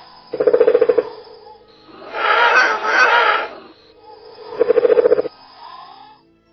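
Monster sound effect: a short rattling growl, then a longer, louder roar, then a second rattling growl near the end, over faint background music.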